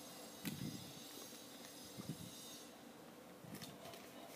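Faint handling noise from hands moving a small plastic memory card reader: a few soft bumps and rubs over a steady low hiss.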